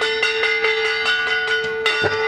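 A metal bell rung rapidly, about five strokes a second, over one steady ringing tone, as rung during aarti worship.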